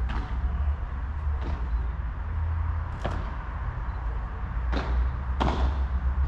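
Padel rally: a padel ball struck by rackets and bouncing on the court and glass, about five sharp, unevenly spaced knocks, the strongest near the end, over a steady low rumble.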